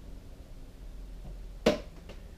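A single sharp click near the end, over a low steady hum.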